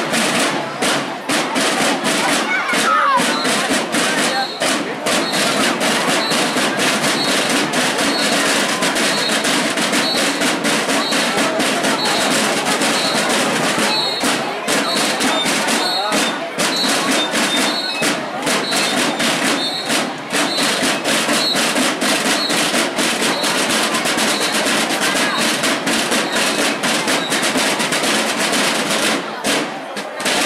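A school marching band's snare and bass drums playing a continuous marching cadence, with rolls, as the contingent walks past.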